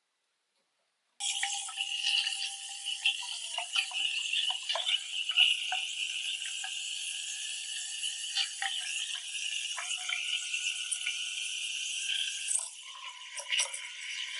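Lelit Mara X steam wand steaming milk in a stainless steel pitcher: it starts suddenly about a second in as a steady high hiss with a whistling tone, broken by irregular crackles as air is drawn into the milk to stretch it. Near the end the tone shifts and the hiss gets quieter.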